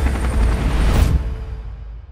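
Helicopter rotor chop mixed with music, both fading out from about a second in.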